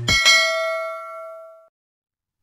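Notification-bell ding sound effect: one struck, bell-like tone that rings and fades out over about a second and a half.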